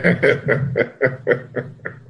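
A man chuckling: a quick run of short laughs, about five a second, fading toward the end.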